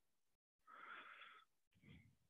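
Near silence, broken by one faint breath of under a second about two-thirds of a second in, and a shorter faint sound just before the end.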